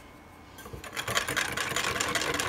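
Small battery-powered handheld whisk starting up about half a second in and buzzing steadily as it mixes a thin sauce in a metal bowl.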